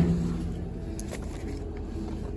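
Infiniti M56's V8 idling, a steady low rumble heard from inside the cabin, with a thump at the start and a couple of faint clicks about a second in.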